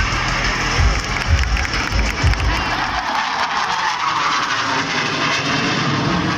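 Jet roar from the Surya Kiran team's Hawk jets flying over in formation: a broad rushing noise that swells in the second half. Under it is background music with a steady bass beat, which drops out about halfway through.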